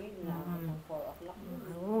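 Quiet speech: a woman's voice talking softly.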